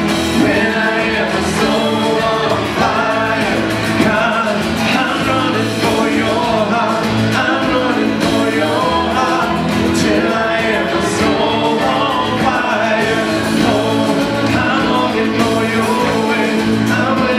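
Live worship band playing a song with singing: acoustic and electric guitars under a lead male vocal with women's voices singing along.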